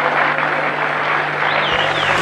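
Arena crowd applauding, a steady, dense clatter of clapping.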